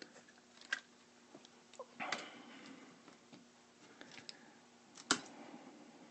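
Faint handling noises: a few light clicks, a brief rustle about two seconds in, and one sharper click near the end.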